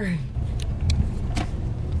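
Steady low rumble of a car cabin's engine and road noise, with a few light clicks.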